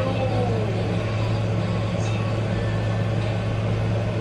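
A steady low hum, even in level throughout, with a faint voice trailing off just at the start.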